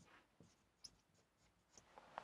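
Near silence, broken by a few faint ticks of a marker pen writing on a whiteboard.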